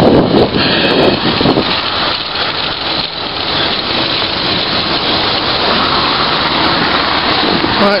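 Wind rushing over the microphone of a camera on a moving bicycle: a loud, steady rush of noise, strongest in the first second.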